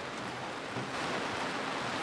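Steady hiss of rain falling.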